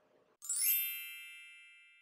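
A bright chime sound effect: several high ringing tones struck together about half a second in, fading away over about a second and a half.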